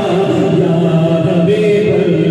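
Men's voices chanting zikr, holding long sustained tones with a step up in pitch about one and a half seconds in.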